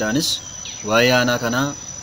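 Crickets trill steadily in a single high tone under a man's voice. The voice holds one drawn-out syllable about a second in.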